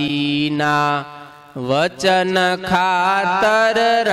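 A man's solo voice singing a devotional verse in a slow, chant-like melody, holding long notes. There is a short break a little after a second in, then the voice glides up into the next phrase.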